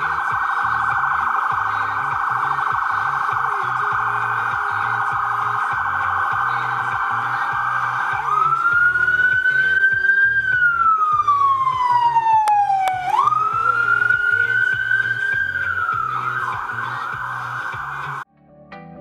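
Ambulance siren: a fast yelp for about eight seconds, then two slow wails that climb and fall, then back to the fast yelp near the end.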